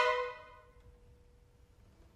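String quartet's loud chord breaking off and dying away over about half a second, one faint note lingering for about a second more, then a silent rest.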